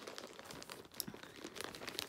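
Clear plastic packaging bag crinkling as it is handled and pulled open: faint, irregular crackles.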